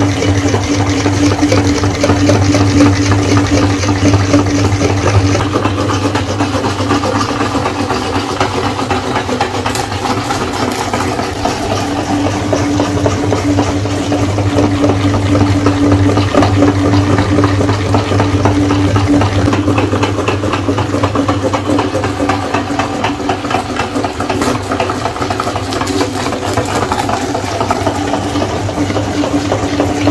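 Slime squeezed through a metal meat grinder's plate, with a dense wet crackle over a steady machine hum.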